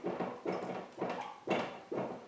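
Dry-erase marker squeaking and scratching across a whiteboard as figures are written, in short strokes about two a second.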